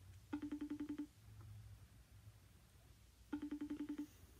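Ringback tone of an outgoing phone call heard through a phone's speaker: two short, pulsing rings about three seconds apart while the call goes unanswered.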